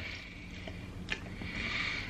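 Soft, faint mouth sounds of a mouthful of marshmallows being worked and chewed, with one light click about a second in.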